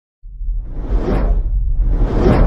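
Logo-intro whoosh sound effect over a low rumble. It starts about a quarter second in, swells to a peak about a second in and fades, and a second whoosh begins near the end.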